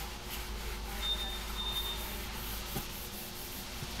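A cloth rag rubbing over a plastic dashboard, a soft steady hiss over a low background hum. A faint high tone sounds for about a second near the middle.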